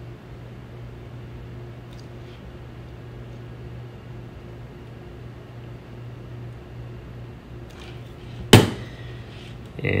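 Steady low electrical hum, with a few faint handling ticks and one sharp click about eight and a half seconds in as a small hand tool is handled.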